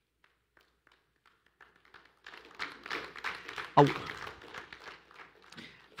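A congregation getting up from their seats: a spread of rustling, shuffling and small knocks that starts about two seconds in after near silence. A brief man's "Oh" comes about four seconds in.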